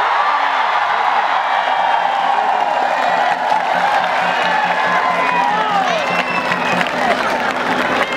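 Large crowd of spectators cheering, shouting and whooping, with a steady beat of about three or four pulses a second underneath that stops about a second before the end.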